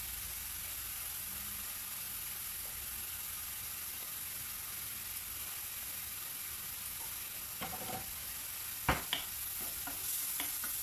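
Chopped mushrooms sizzling steadily in a frying pan over high heat as their released water cooks off. Near the end, a few sharp knocks of a wooden spoon against the pan as stirring begins.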